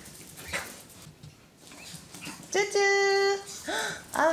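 Small pet dogs whimpering: after a quiet start, one long, steady, high whine near the end, then short rising-and-falling whimpers.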